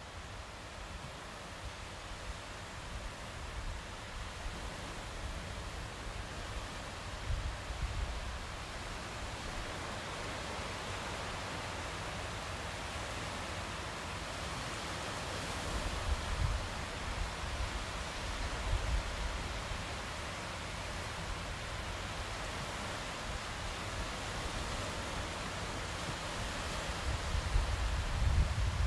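A steady rushing noise, like wind and surf, with low gusty rumbles that swell about halfway through and again near the end.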